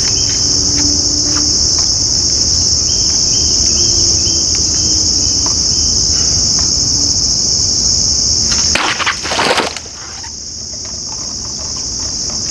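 Steady high-pitched insect chorus throughout. About nine seconds in, a heavy machete swing cuts through three full plastic water bottles at once, a quick clatter lasting about a second and the loudest moment.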